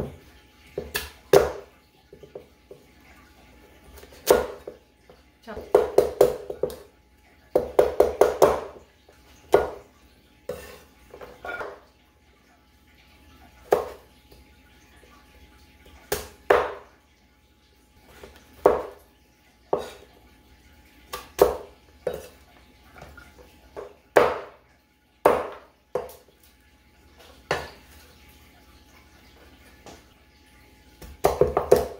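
Kitchen knife chopping peeled pumpkin on a thick wooden chopping board: irregular sharp knocks of the blade hitting the board, with quick runs of strokes about six to nine seconds in.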